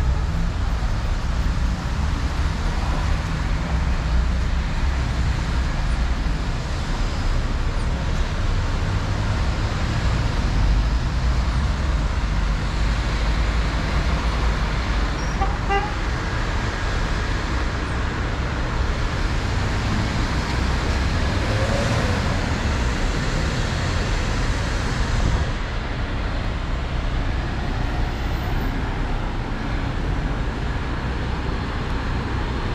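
Road traffic on a city street: cars passing in a steady, noisy rumble. It turns a little quieter for the last few seconds.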